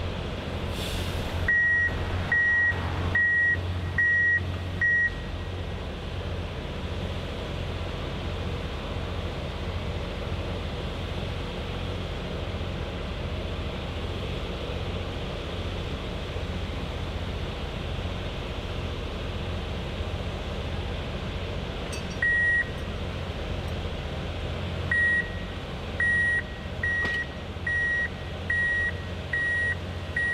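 Diesel engine of a hi-rail excavator running steadily at idle, with a brief hiss just after the start. A backup alarm beeps at a steady pace, about one beep every 0.8 s: five beeps in the first few seconds, a single beep later, and a run of about seven near the end.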